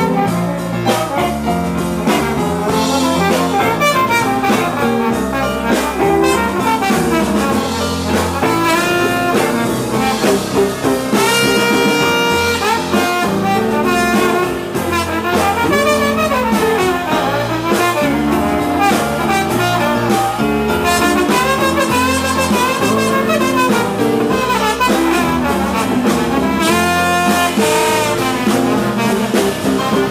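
Live New Orleans-style rhythm-and-blues band playing an instrumental passage with keyboard, drums and horns, a trombone playing lead over the band.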